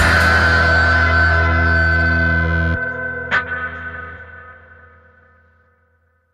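The last chord of a psychedelic rock song ringing out. The band stops and a held chord of effects-laden guitar and bass sustains. The bass cuts off just under three seconds in, followed by one short sharp noise. The guitar then fades away to silence.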